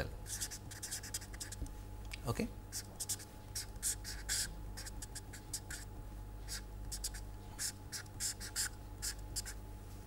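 Marker pen writing and drawing on paper: a quick, irregular run of short scratchy strokes as boxes, letters and arrows are drawn, over a faint steady hum.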